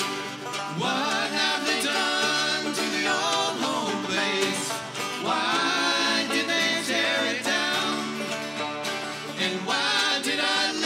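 Live bluegrass band playing: banjo, mandolin and acoustic guitar picking together, with sung vocal lines that come in about a second in, again in the middle and near the end.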